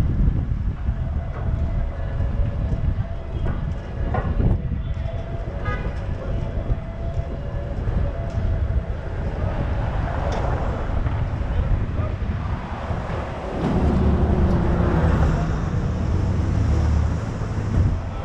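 Wind buffeting the microphone of a roof-mounted camera on a moving car, over the steady noise of city street traffic. A louder low rumble swells in about three-quarters of the way through.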